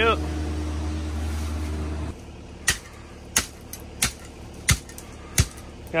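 A steady low hum for about two seconds, then a steel hand tamper pounding a thin layer of #57 crushed gravel: six sharp strikes, about one every two-thirds of a second.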